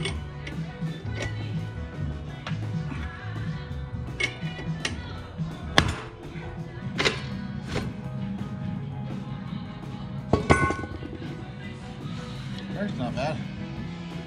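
Background music with a stepping bass line, over scattered sharp metallic clinks and knocks as steel brake parts and tools are handled on an axle's drum-brake assembly. The loudest knocks come about six seconds in and again about ten seconds in.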